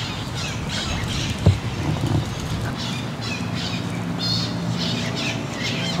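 Birds squawking in repeated short high calls, with a single sharp knock about a second and a half in and a low steady hum from about halfway through.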